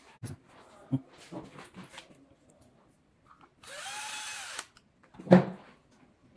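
Electric screwdriver runs for about a second, its motor whine rising and then falling as it drives a screw. Before it come light clicks and knocks of parts being handled, and near the end there is one loud clunk.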